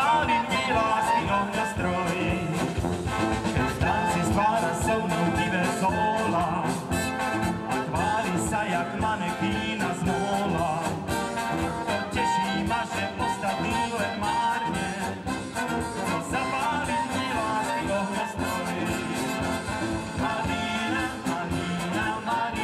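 Slovak brass band playing dance music live, with trumpets, trombones, saxophone and tuba over a drum kit.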